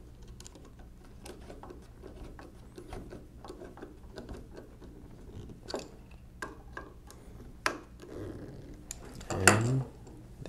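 A screwdriver tightening screws into the metal frame of a 1920s Monroe mechanical calculator: faint, irregular clicks and ticks of the driver and screws, with a few sharper clicks in the middle. A brief louder sound comes near the end.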